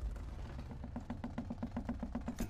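Trailer sound design: a rapid run of low, evenly spaced clicking pulses, about nine a second, over a deep rumble, beginning about half a second in.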